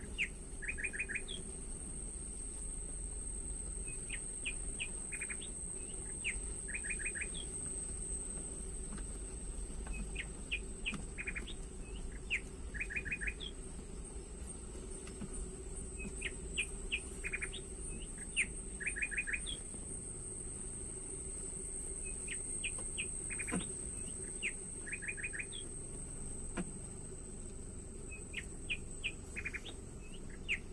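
A songbird repeating the same short song about every three seconds: a few separate high notes followed by a quick run of about five strokes. A steady high-pitched whine runs underneath.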